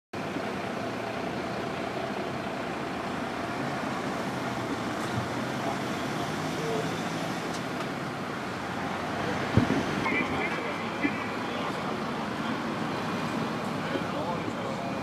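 Steady road traffic noise from a motorway, with faint voices and one sharp knock about ten seconds in.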